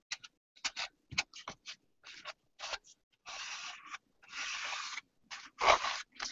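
Paper of a mixed-media art journal being handled and turned: a run of small scratches and ticks, then two longer rustling slides of paper a little past the middle, and a louder rustle near the end.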